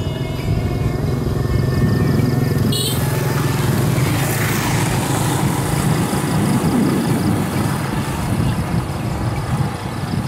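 Small motorbike engines running close by, a steady low drone that swells in the middle, with music playing over it.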